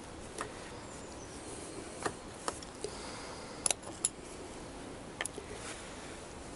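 Scattered light clicks and taps of small metal parts and tools being handled, about seven over the few seconds, with two close together a little past halfway.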